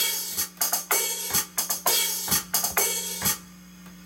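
Electronic drum kit heard through its amplifier: drag strokes, two quick ghost notes leading into an accent, played on the hi-hat with open-and-close hi-hat washes. The pattern stops a little past three seconds in.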